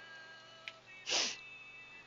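A short breathy puff, like a quick exhale or sniff into a headset microphone, about a second in, after a small click. Faint held musical tones sit underneath.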